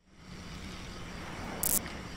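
Steady outdoor background noise: a low hum under an even hiss, with one short high hiss about one and a half seconds in.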